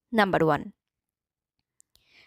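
One short spoken word lasting about half a second, cut off abruptly into dead silence, with a faint click near the end.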